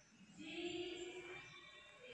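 A person's voice in the background: one drawn-out call that starts about half a second in and lasts about a second.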